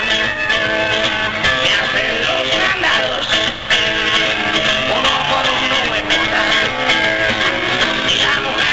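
Rock music led by guitar, played by a live band, with no singing in this stretch.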